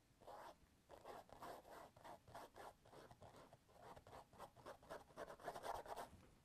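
Faint scratching of a small paintbrush stroked quickly back and forth over the painted mural surface, about three or four short strokes a second, a little louder near the end.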